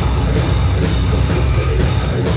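A heavy metal band playing live and loud, with distorted electric guitars and a drum kit, heard from within the crowd.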